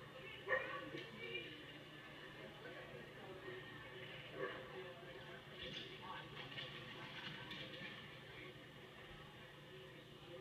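Faint, indistinct voices and background hubbub of an indoor agility arena, playing from a television speaker, with a sharp knock about half a second in.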